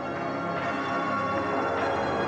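Dark, ominous music built on layered ringing bell tones, swelling in and then holding steady.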